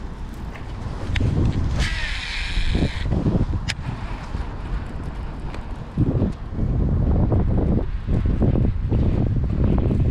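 Wind buffeting the microphone, a steady low rumble, with a few light knocks of handling and a brief hiss about two seconds in.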